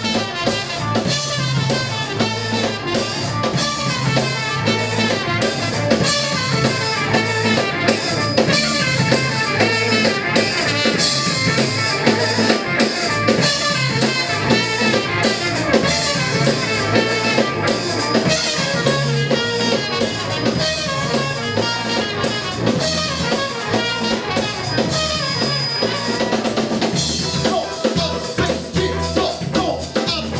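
Live band playing an instrumental number: a drum kit keeps a steady beat on snare and kick drum, under trumpet and electric guitar.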